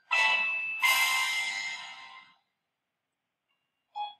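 Two bright chime strikes from a cartoon's title jingle, the second about a second after the first, each ringing out with several pitches and fading away over about two seconds.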